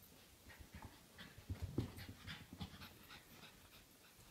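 Small puppy panting in short, quick breaths while play-wrestling, loudest around the middle.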